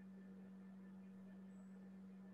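Near silence: a faint, steady low hum over room tone, with a faint short high beep about two seconds apart.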